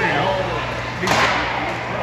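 A single sharp crack of ice hockey play about a second in, ringing briefly in the rink, with spectators' voices shouting around it.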